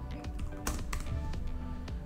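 Computer keyboard typing: a quick, irregular run of keystrokes typing a short word, over faint background music.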